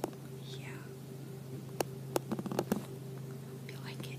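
A girl's voice speaking quietly, too faint for words to be made out, over a steady low hum, with a few sharp clicks about two seconds in.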